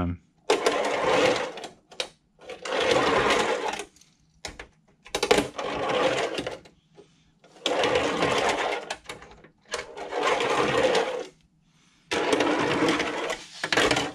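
Tech Deck fingerboard's small wheels rolling up and down a fingerboard half-pipe ramp, six runs of rolling noise about a second each, roughly every two seconds, with brief quiet between as the board turns at the top.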